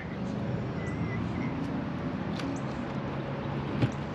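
Steady low outdoor background hum with a few faint clicks, and a short faint chirp about a second in.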